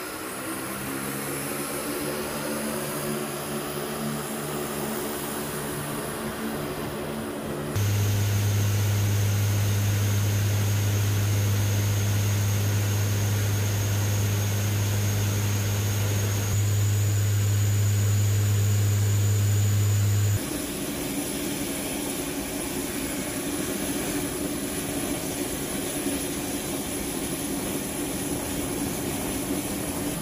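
KC-130J Super Hercules turboprop engines running with propellers turning, a steady multi-tone hum. About eight seconds in it gives way to a loud, steady low propeller drone heard inside the cabin in flight. Near 20 seconds that ends abruptly and a quieter engine hum with a thin high whine takes over.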